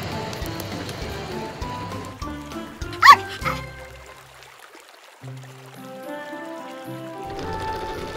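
Background music with one short, loud bark from a cartoon puppy about three seconds in.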